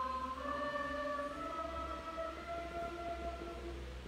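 Church choir singing Orthodox liturgical chant in long, held notes that move slowly from one pitch to the next, over a low steady rumble.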